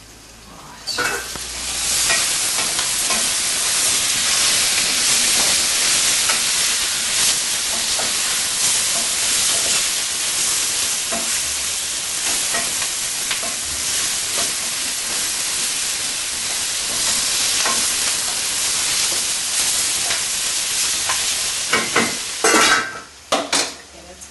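Lamb and onions sizzling in a pot as they braise on the stove, a steady frying hiss that comes up about a second in, with small scrapes of stirring. A few sharp clinks of a utensil against the pot near the end.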